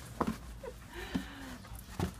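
Soft-sided suitcase being handled as its lid is pushed shut over a person curled inside: fabric rustling and a couple of light knocks, one just after the start and another near the middle, with a few faint short voice-like sounds.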